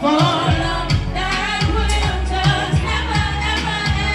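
A woman singing live into a microphone over amplified backing music with a deep bass line and a steady drum beat.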